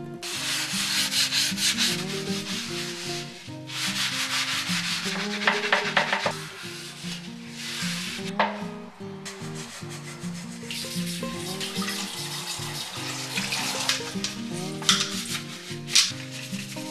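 A soapy kitchen sponge scrubbing glassware in stretches of rubbing strokes, broken by short pauses, over soft background music.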